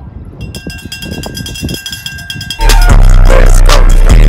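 Very loud, bass-heavy music with a steady beat cuts in abruptly about two and a half seconds in and stays at full loudness. Before it there is only faint outdoor background.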